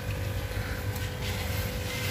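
A steady low mechanical hum with a constant faint tone running under it.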